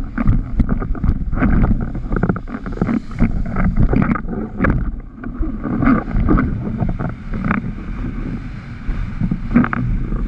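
Wind buffeting the microphone over the rush of water from a windsurf board planing across chop, with frequent sharp slaps as the board strikes the waves.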